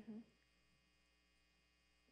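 Near silence: a faint, steady electrical hum in the room, after a brief murmured 'mm-hmm' at the start.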